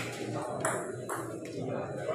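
A table tennis ball clicking against the table and bats: a sharp click at the start, then about three lighter hits over the next second and a half, with a murmur of voices in the hall.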